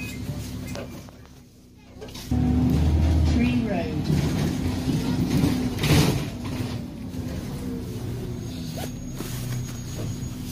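Inside an Alexander Dennis Enviro 400 double-decker bus on the move: engine and drivetrain rumble that drops away, then rises sharply about two seconds in, with a brief louder peak about six seconds in.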